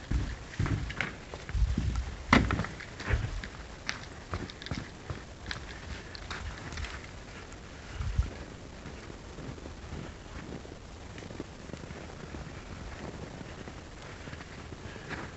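Footsteps of a person walking, with several sharp knocks and thumps in the first few seconds as he goes out through a door. After that come softer, steady footsteps on snow-covered ground.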